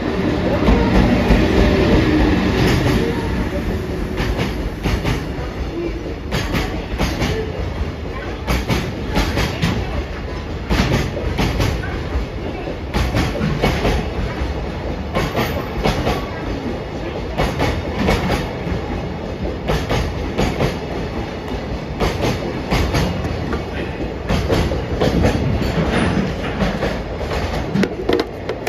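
JR Freight EF81 303, a stainless-steel electric locomotive, passing close by, loudest in the first few seconds. Its long train of container flatcars follows, rolling by with a continuing clatter of wheels clicking over the rail joints.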